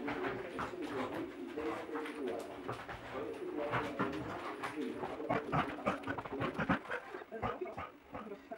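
Border collie dashing and scrabbling around a floor after a flirt-pole lure: a quick run of paw thuds and claw clicks that gets louder and busier past the middle, over a low wavering tone.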